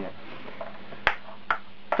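Two sharp plastic clicks about half a second apart, the first with a brief ring, as a pressure washer's plastic spray gun and lance are picked up and handled.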